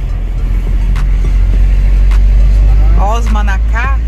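Steady low rumble of a car's engine and tyres heard from inside the cabin while driving; a voice comes in near the end.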